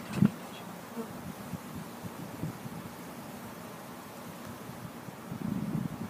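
Honey bees buzzing steadily around an open hive with many bees on the exposed frames. A single sharp knock comes just after the start, and a louder rustling handling noise comes near the end.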